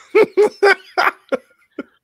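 A man laughing in about six short bursts, loudest at first and growing weaker before trailing off.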